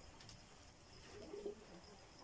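Near silence, with a faint bird call around the middle.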